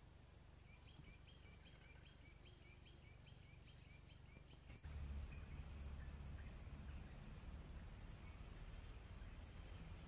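Faint outdoor ambience in which a small bird calls a quick series of repeated chirps, about two or three a second, for the first few seconds. About five seconds in the background changes abruptly to a steadier low rumble.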